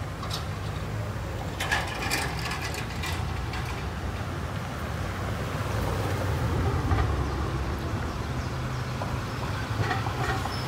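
Street traffic: a steady low engine rumble from cars and trucks driving past, with a few sharp clicks and rattles about two seconds in.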